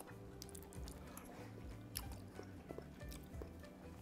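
Quiet chewing of a mouthful of tender braised carrot, soft small clicks of the mouth with no crunch, over faint background music.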